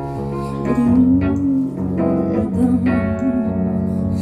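Live band music led by a Nord stage keyboard playing sustained chords, with a melody line that bends in pitch over them.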